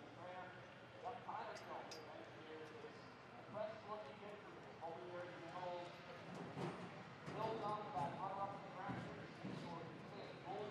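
Faint, indistinct talk from people nearby, louder in the second half, with a few light clicks.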